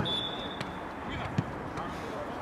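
A football kicked on an artificial pitch, one sharp thud about one and a half seconds in, over steady outdoor match noise with faint shouts from players. A faint thin high tone sounds briefly near the start.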